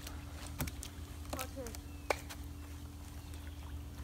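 Quiet poolside ambience: a steady low hum with a few sharp ticks and a brief short voice sound about one and a half seconds in.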